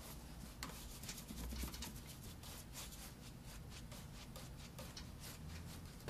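Faint brush strokes on canvas: a paintbrush rubbing across the surface in short, quick strokes, several a second.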